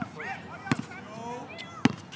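Basketball dribbled on an outdoor hard court: three sharp bounces, roughly a second apart.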